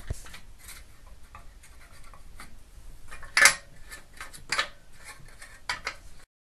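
Light knocks, clicks and rubbing from hands handling steel weight-training equipment, with two louder clatters about three and a half and four and a half seconds in.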